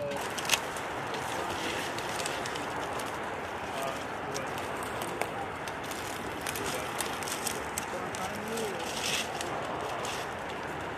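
Steady outdoor background hiss with scattered sharp clicks, the loudest about half a second in, and faint, indistinct voices.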